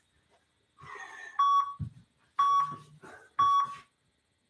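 Interval timer countdown: three short electronic beeps about a second apart, marking the end of a rest period and the start of the next work interval. A soft thump comes between the first two beeps.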